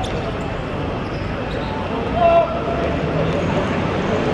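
Small-sided football match sound: a steady background din with players' voices, a sharp ball kick right at the start, and one loud shouted call a little past halfway.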